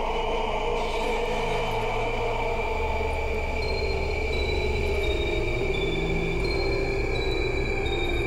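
Tense dramatic background score: low sustained drones under a steady high held tone, with short high pinging notes coming in from about halfway through.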